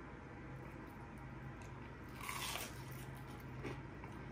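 A crunchy bite into a Hot Cheeto–crusted fried chicken strip about halfway through, followed by quieter chewing, over a faint steady low hum.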